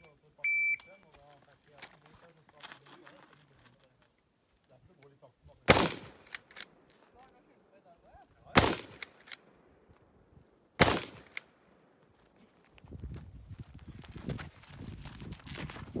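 A shot timer's short electronic start beep about half a second in, then three single rifle shots from a Troy PAR pump-action rifle in .308 Winchester, spaced about two to three seconds apart. A stretch of softer scuffling noise follows near the end.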